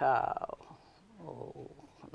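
A woman's voice in mid-sentence: a drawn-out syllable falling in pitch, then a short low hum of hesitation just over a second later.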